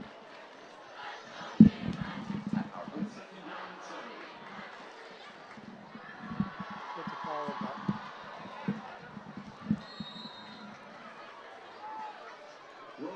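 Football stadium crowd murmuring, with distant voices and scattered low thumps; the loudest is a sharp thump about one and a half seconds in.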